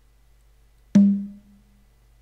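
A single hit of a sampled low conga ('Conga LO 1' in an Ableton drum kit) about a second in, with a short ringing tone that dies away in under a second.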